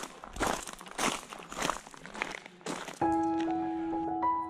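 Footsteps on a gravel path, about two steps a second. Near the end, piano music comes in.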